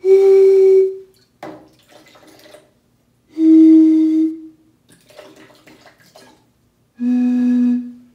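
Breath blown across the mouth of a small glass bottle partly filled with water, sounding three separate resonant tones of about a second each, each lower in pitch than the last. The falling pitch is the bottle's air column resonating at a lower standing-wave frequency as the water is poured out and the column lengthens. Fainter, noisier sounds come between the tones.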